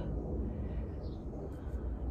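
Low, steady outdoor background rumble with no distinct sound events.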